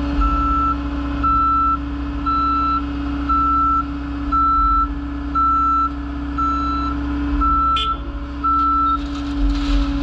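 Dump truck backing up, its backup alarm beeping about once a second in a steady high tone over the running engine. The beeping stops about nine seconds in, and a short hiss follows near the end.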